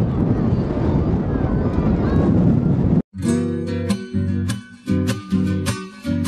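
Loud rushing outdoor noise with voices, cut off abruptly about halfway through by strummed acoustic guitar music.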